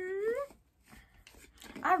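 A woman's short wordless vocal sound, made with her tongue stuck out, lasting about half a second. It holds one pitch, then rises at the end. Speech begins near the end.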